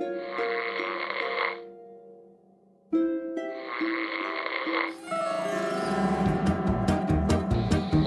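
Two cartoon snoring sound effects, each lasting about a second and a half, over light plucked music. About five seconds in, fuller music with a bass beat takes over.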